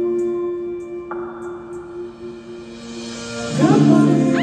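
Live band music: a sustained chord rings and slowly fades, then the band comes in loudly again near the end.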